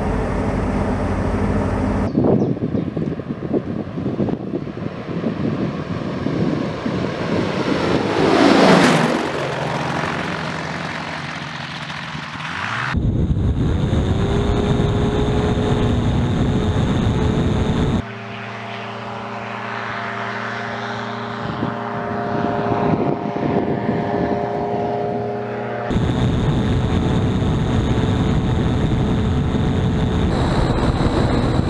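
CFM Shadow microlight's engine and propeller running, the sound changing abruptly several times as the listening position changes. About eight to nine seconds in it grows loudest and its pitch drops sharply as it passes close by. Later it settles into a steady engine note with clear, even tones.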